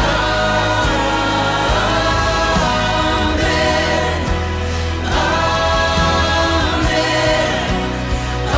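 A mixed virtual choir sings a repeated "Amen, amen, amen" refrain in a gospel-style worship song, in phrases of about two seconds, over a steady low backing.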